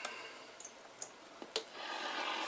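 A few faint, scattered clicks and small knocks of a hand moving on and around a radio set, over the quiet hiss of a small room.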